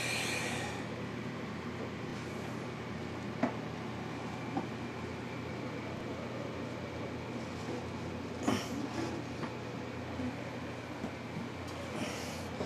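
Steady mechanical hum and hiss of a running room appliance, with a few faint clicks and one short knock about two thirds of the way through, as snake hooks and tools are handled.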